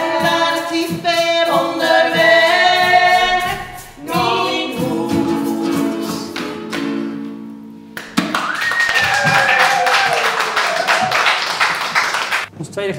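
Three women singing a song in close harmony in Groningen dialect, with a ukulele, ending on a held chord that fades. About eight seconds in, applause and a cheer break out.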